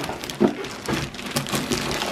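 Cardboard box and plastic-bagged toy parts rustling and crinkling as the box is opened and its contents are pulled out, a dense run of small crackles and clicks.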